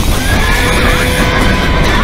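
A horse whinnying over a steady, loud rushing noise from a horse and cart moving at a fast trot, with music underneath.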